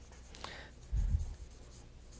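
Faint writing sounds, with a soft low bump about a second in.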